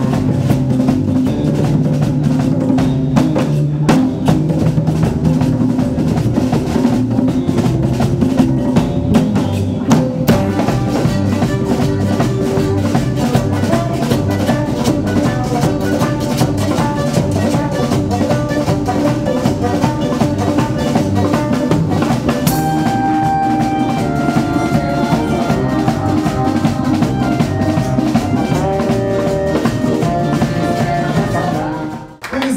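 A live cumbia band playing, with drum kit and hand percussion keeping a steady beat under horn and clarinet lines.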